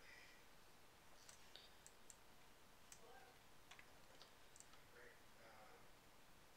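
Near silence: room tone with faint, scattered small clicks and ticks between about one and five seconds in.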